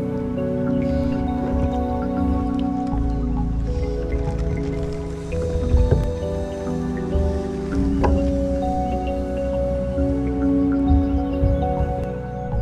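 Background music with held, changing notes.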